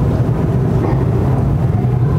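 Loud, steady, low rumbling noise, heaviest in the bass.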